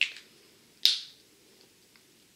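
Two sharp plastic clicks, one at the start and a louder one just under a second later: a whiteboard marker's cap being snapped on or pulled off.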